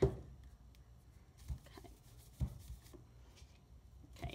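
Handling of a PVC pipe faux candle during glazing: a sharp knock right at the start, then a few soft low thumps at intervals, otherwise quiet.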